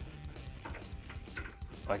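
Faint light clicks of a small metal sensor bracket being handled and held against an ATV's front wheel hub, over a low steady hum.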